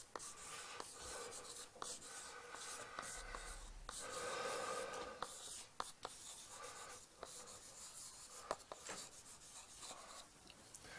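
Chalk writing on a blackboard: faint scratchy strokes broken by light, irregular taps as the letters are formed.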